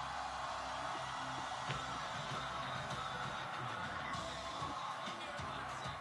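Music from a televised concert broadcast playing through the television, at a steady level.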